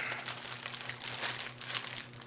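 Plastic zip-top bags crinkling continuously as gloved hands handle them, loading a heavy lead brick inside.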